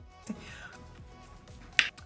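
A quiet pause with faint music in the background, then a single sharp snap near the end.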